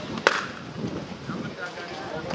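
Crowd murmur with scattered distant voices, and a single sharp click shortly after the start.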